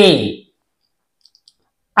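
A voice says the single syllable 'a', then near silence broken by three or four faint, quick clicks just over a second in.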